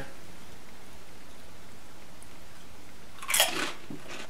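Steady faint room hiss, then about three seconds in a short burst of crunching as a kettle-cooked potato chip is bitten and chewed.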